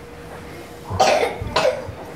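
A person coughing twice, about a second in and again half a second later.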